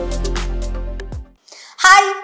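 Upbeat dance music with a heavy bass and drum beat that cuts off about a second in, followed by a brief gap; near the end a woman's voice starts.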